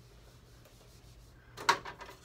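Whiteboard eraser rubbing across a whiteboard, faint at first, with a louder short scrub near the end.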